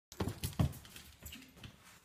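A Vizsla's paws thudding and scrabbling on a wooden floor as it bounds about: a quick run of thumps, loudest in the first second, then a few lighter knocks.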